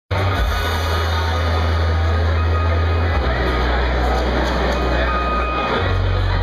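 A deep, held bass drone from the stage's sound system, shifting to a new pitch about three seconds in and again near the end, over the loud din of a concert crowd.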